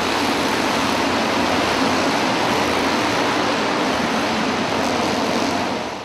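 A pack of speedway motorcycles with JAP single-cylinder engines racing together, a dense, steady, loud engine noise.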